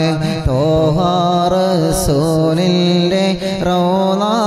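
A man chanting Arabic devotional verses (salawat) in a long, ornamented melody that glides and bends in pitch. A thin, steady high tone runs underneath.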